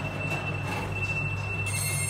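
A 1993 Express Lift Co traction elevator makes a steady high-pitched whine over a low hum as its car doors start to close. A second, higher whine joins near the end.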